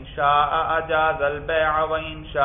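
A man's voice reciting in a chanting, sing-song tone, in phrases of drawn-out held notes with brief breaks between them.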